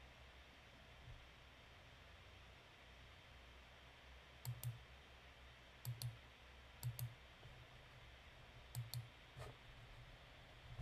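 Computer mouse button clicking four times in the second half, each click a quick press-and-release pair, over faint room hiss.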